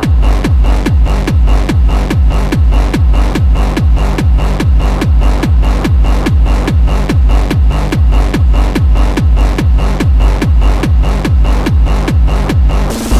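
Early-2000s hardstyle dance track: a heavy kick drum with a falling pitch hits on every beat, about two and a half a second, under synths. The full beat comes in at the very start, after a quieter passage.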